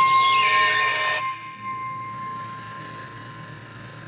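A contemporary piece for flute and live electronics. A single high tone is held and slowly fades. Over it, a dense swirl of higher tones cuts off suddenly about a second in.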